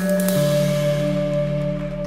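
Slow, held ambient chords from an electric guitar run through effects pedals, with the band. A lower note comes in about a third of a second in, and a bright shimmer at the start fades away.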